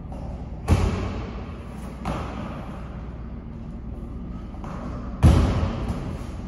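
Feet landing hard on a plyometric box during box jumps: two heavy thuds about four and a half seconds apart, with a lighter knock between them.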